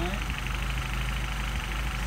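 Mercedes-Benz 190SL four-cylinder engine idling steadily on its twin Solex carburetors, at a low idle while the idle mixture screws are being set.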